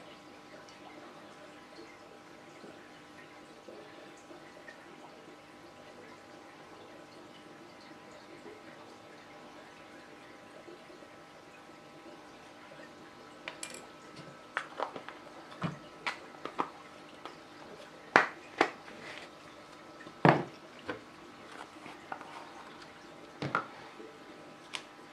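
Plastic powder-food tubs, lids and a small measuring spoon being handled on a wooden table: after a stretch of faint steady hum, a scattered run of light clicks and knocks starts about halfway through, a few of them sharper taps.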